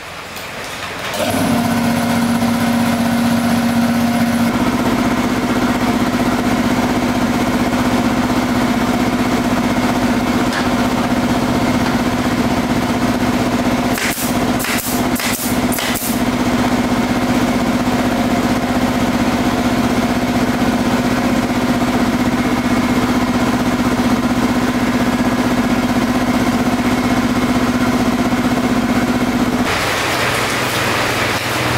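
Piston air compressor starting up about a second in and then running steadily with a humming motor tone. About halfway through come a few short, sharp pops from a pneumatic staple gun fastening a scooter seat cover.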